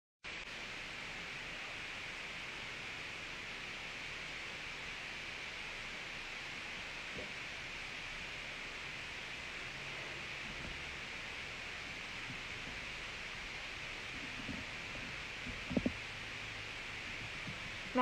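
Steady hiss from a phone microphone's background noise, with a couple of faint short sounds about two seconds before the end.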